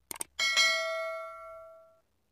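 A quick double click sound effect, then a bright bell ding that rings with several clear tones and fades over about a second and a half before cutting off. It is the chime of a subscribe-and-bell end-screen animation.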